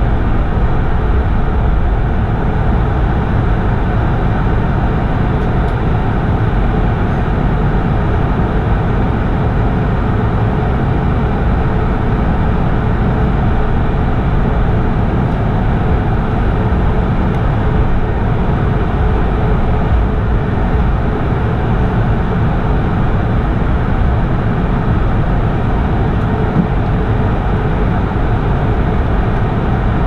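Steady cabin noise inside a Bombardier CS100 airliner while it taxis: its Pratt & Whitney PW1500G geared turbofan engines at idle, with a low, even rumble and hum.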